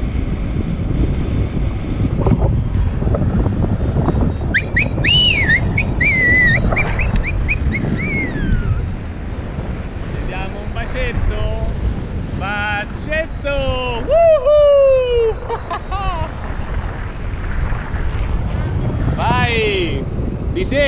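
Wind rushing steadily over the microphone of a camera flying with a tandem paraglider, with several high sliding calls over it; the loudest is a falling call about 14 seconds in.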